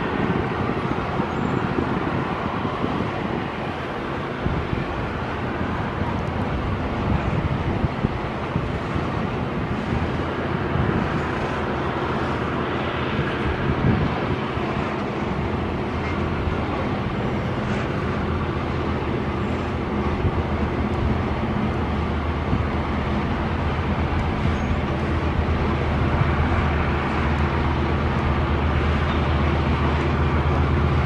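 EMD SD80ACe diesel-electric locomotive's 20-cylinder two-stroke engine working hard as a rear helper, pushing a loaded iron-ore train up a steep grade, over the steady rumble of the ore wagons rolling. The engine drone grows stronger near the end as the locomotive comes closer.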